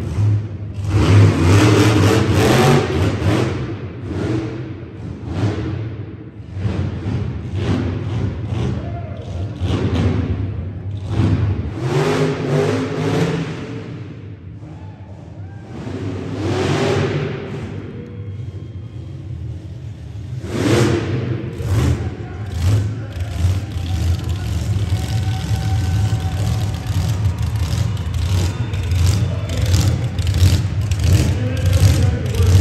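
Supercharged monster truck engine running and revving in bursts, repeated surges over a steady low running note, with a quieter stretch a little past the middle.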